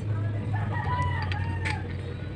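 A rooster crowing in the background: one long call lasting about a second and a half, over a steady low hum.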